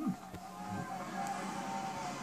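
Television sports broadcast sound picked up off the screen, a quiet stretch without commentary: a faint steady tone under low background noise, with one click about a third of a second in.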